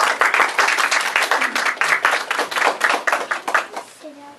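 Small audience applauding with a dense run of hand claps that thins out and dies away near the end.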